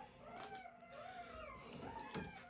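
Faint, high-pitched whimpering squeals of newborn golden retriever puppies, several wavering cries overlapping and rising and falling in pitch.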